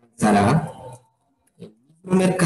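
A loud wordless vocal sound from a person's voice, lasting under a second, with a faint short sound about a second and a half in.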